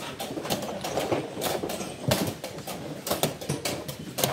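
Wooden chess pieces clicking down on a board as they are set back up after a blitz game, a quick irregular run of knocks.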